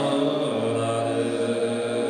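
Tuvan throat singing: a steady low drone rich in overtones, its bottom note growing stronger about half a second in.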